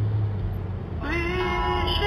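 Steady low hum of a car's cabin on the move. About a second in, a song begins, with a voice sliding up into a held note.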